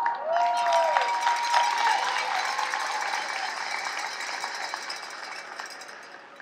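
Audience clapping and cheering, with a held cheer over the clapping in the first second or two; the applause dies away gradually over several seconds.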